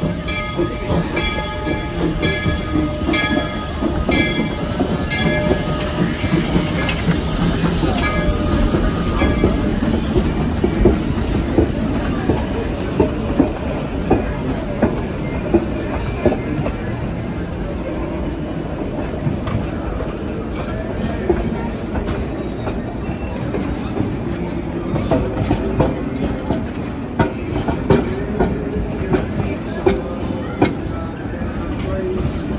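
Narrow-gauge steam train passing close by. For the first several seconds a bell rings in steady, evenly spaced strokes, then fades as the locomotive goes past. After that the rumble of the coaches comes through, with sharp clicks from their wheels over the rail joints.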